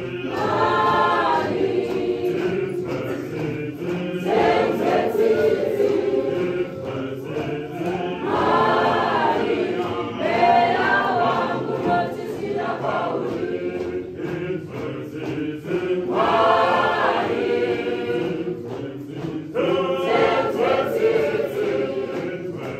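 Church choir singing a processional hymn, its sung phrases swelling and falling about every four seconds.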